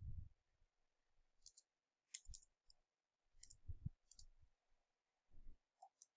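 Faint computer keyboard keystrokes: a handful of separate key clicks, spaced roughly a second apart, over near silence.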